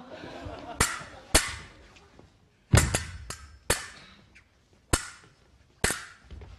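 Stage swords clashing in a fencing duel: about eight sharp metallic clashes at an uneven pace, some in quick pairs, the heaviest a little under halfway through.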